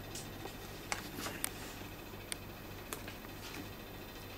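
A deck of cards being cut into packets by hand and the packets set down on a soft close-up mat: a handful of faint, short clicks and taps.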